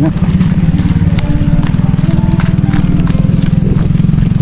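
Small motorcycle engine running steadily at low speed, with a rapid, even pulsing beat, while riding over a rough dirt path, with occasional knocks.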